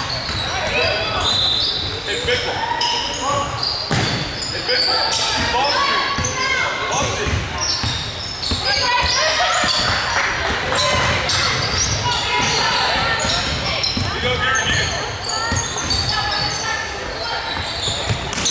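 Basketball game on a hardwood gym court: a ball bouncing as it is dribbled, short high-pitched sneaker squeaks, and indistinct voices, all echoing in the large hall.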